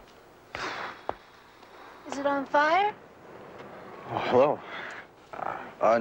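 Short voiced utterances, in bits too brief to make out as words, with a brief rushing noise and a sharp click about a second in.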